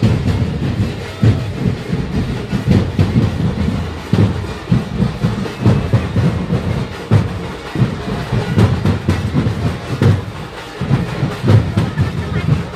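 Loud, distorted drum-heavy music with booming low beats that come unevenly, roughly one or two a second, over a steady crowd din.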